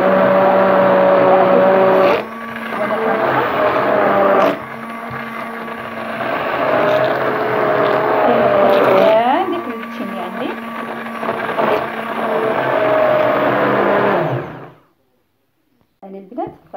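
Hand-held stick blender running in a plastic bowl, blending eggs with orange pieces and zest into a froth. Its loudness and pitch shift several times as it works through the mixture, with a brief rising whine a little after halfway, and it switches off about a second before the end.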